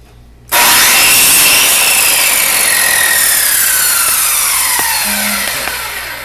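Chop saw starting abruptly about half a second in and cutting through a dried, compacted paper briquette, then the blade spinning down with a slowly falling whine.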